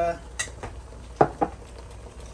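Metal utensil clinking against a wok: a light click, then two sharp knocks in quick succession a little past the middle.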